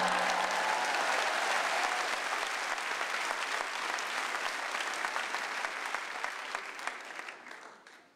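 Audience applauding, loud and steady, then dying away near the end.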